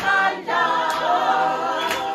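Church congregation singing a gospel praise song together in chorus, with a sharp beat about once a second.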